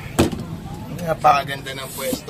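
Inside a moving bus: a sharp knock about a quarter second in, then voices, over the steady low hum of the bus.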